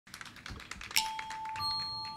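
Logo-intro sound effect: a quick run of soft clicks, about ten a second, like typing, then a sharper click about a second in that leaves a thin, steady high tone ringing, joined by a second, higher tone near the end.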